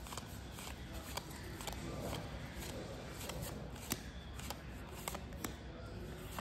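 Yu-Gi-Oh trading cards being thumbed through by hand, one card slid over another. It is a faint papery rustle with a scattering of sharp little clicks.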